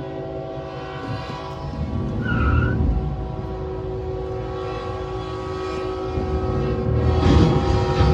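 A CSX train's horn sounding one long steady blast, heard from inside a car, with a loud crash near the end as the train strikes the semi-trailer and excavator stuck on the crossing.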